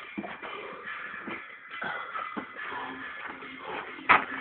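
Music playing, with irregular scuffing footsteps and knocks from someone running and moving about.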